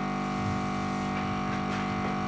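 Small airbrush compressor running with a steady buzzing hum, feeding air to the airbrush as body paint is sprayed onto skin.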